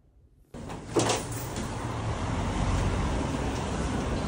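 City street traffic with a car passing close, and wind rumbling on the microphone. It begins suddenly about half a second in, after a moment of near silence.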